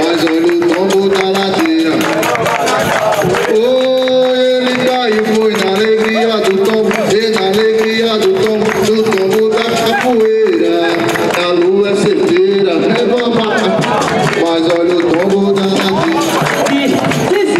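Capoeira music: a man singing call-and-response songs over an atabaque drum, pandeiros and a berimbau, with hand clapping. Notes are held long in the middle stretch.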